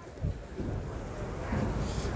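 Low, uneven rumble of wind and handling noise on a phone microphone.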